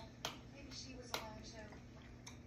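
Two sharp clicks, about a quarter second in and just past a second in, as hands handle a small stack of cards, over faint dialogue from a television and a steady low hum.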